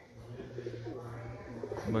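Domestic pigeon cooing, low and wavering, from about half a second in until near the end.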